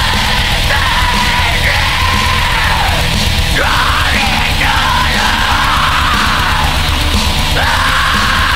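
Pagan black metal: distorted guitars, bass and drums playing with harsh shouted vocals, over a lead melody with sliding notes.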